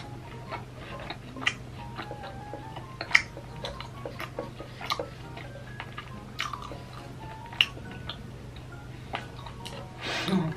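Close-up chewing of crispy pork belly crackling: irregular crunches and small mouth clicks, with two louder crunches about three seconds and seven and a half seconds in.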